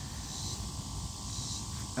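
Outdoor ambience: a steady, high insect hiss, like crickets, with a faint low rumble beneath it.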